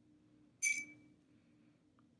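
A single light clink about half a second in, with a short high ringing tone that dies away within half a second: a paintbrush knocking against a hard paint container. Faint steady room hum underneath.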